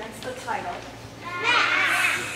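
Young children's voices chattering and exclaiming, with a louder high-pitched child's voice about one and a half seconds in.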